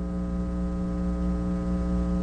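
Steady electrical mains hum with a buzzy stack of overtones, picked up in the audio chain of a speech recording during a pause in the speaking.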